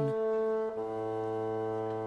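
Background music of wind instruments, brass-like in sound, holding a long sustained chord. A lower note joins under a second in, and the chord fades out near the end.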